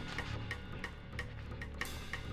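A quiet, sparse passage of acoustic jazz. A steady ticking beat on the drums, about three ticks a second, plays over low bass notes.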